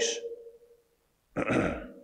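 A man clearing his throat once, briefly, about a second and a half in, close on a lapel microphone.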